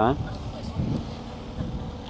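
Wind rumbling on the microphone over steady outdoor background noise, after the tail of a man's spoken word at the start.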